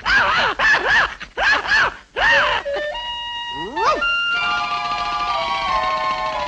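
Cartoon puppy barking loudly: about four sharp yelps in quick succession, each rising and falling in pitch. Then the orchestral score takes over with a quick upward glide and settles into a held chord.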